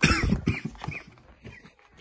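A person coughing in a short fit: several coughs in quick succession in the first second, the first the loudest, then dying away.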